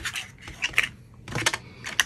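Folded cardstock pieces handled on a glass craft mat: about four short taps and rustles as the card is pressed flat and slid aside.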